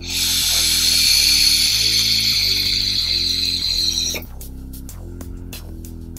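A long draw on a vape tank fired by a Lotus LE80 box mod: a steady hiss of air and vapour pulled through the atomizer, lasting about four seconds and cutting off sharply. Background music plays underneath.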